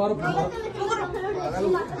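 Several people talking at once: mixed voices of adults and children in a room.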